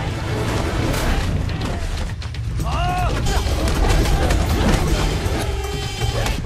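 Fight-scene soundtrack: a steady background music track with scattered sharp hit sounds, and a shouted vocal cry about halfway through.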